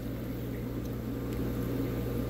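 Steady low hum of pond equipment running, a pump or aerator, with the water bubbling faintly.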